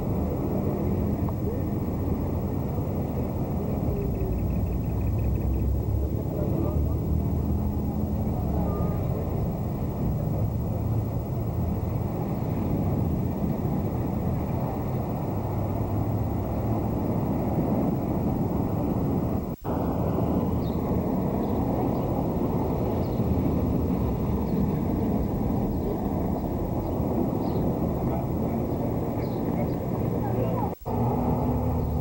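Steady outdoor background noise recorded by a camcorder microphone: a continuous low rumble with faint, indistinct voices. The sound drops out briefly about twenty seconds in, where the recording cuts.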